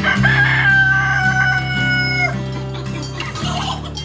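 A rooster crowing once: one long call of about two seconds that starts just after the beginning and drops slightly at the end, over background music.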